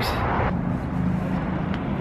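Outdoor traffic ambience: a steady low vehicle hum under a wash of road noise, after a brief rustle in the first half second.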